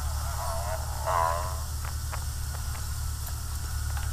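A steady low electrical hum, with a handful of light, separate taps in the second half: fingertips tapping a smartphone's touchscreen to test a new touch panel. A faint voice sounds briefly in the background about a second in.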